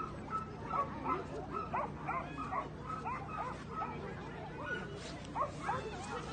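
A dog yipping and whining, with short high-pitched calls repeating two or three times a second.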